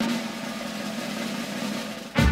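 A steady snare drum roll, starting suddenly and held for about two seconds, opening a march-style film theme.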